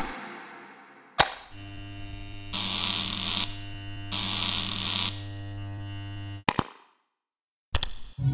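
Animated-logo sound effects: a sharp click about a second in, then a steady electrical hum with two loud buzzing bursts of about a second each, stopping abruptly with a click. Another click comes near the end.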